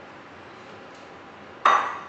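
Stainless steel milk jug knocking against the coffee machine's frother: one sharp metallic clink that rings briefly, near the end, over a faint steady background noise.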